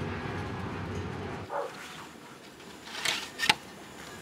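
Low steady rumble of a moving bus's interior that cuts off about a second and a half in. It is followed by a short call and two sharp crackling rustles near the end, the second the loudest.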